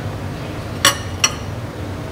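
Metal spoon clinking twice against a ceramic bowl: two light clinks less than half a second apart, near the middle.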